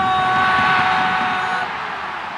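A football commentator's long, held goal call on one note, breaking off about one and a half seconds in, over a stadium crowd cheering the goal.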